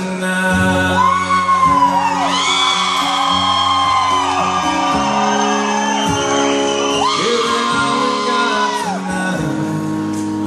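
Live acoustic guitar holding sustained chords through a PA in a large hall. Over it, long high wordless vocal calls arch up and fall back, once about a second in and again about seven seconds in.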